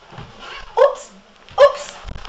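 Two short, loud animal calls, a little under a second apart.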